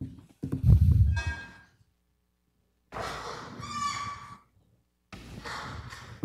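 Handling and movement noise in a meeting room: a low thump about half a second in, then, after a pause, a short stretch of rustling with a brief pitched creak or squeak, and more rustling near the end.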